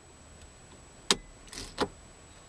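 Mazda 5 ignition key being turned to off: a sharp click, a short soft scrape, then a second click about two-thirds of a second after the first.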